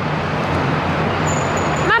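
Steady street traffic noise: a continuous low rumble of vehicles passing on a city street.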